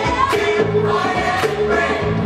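Gospel choir singing with a live band behind it: held bass notes and a steady beat of about two strokes a second.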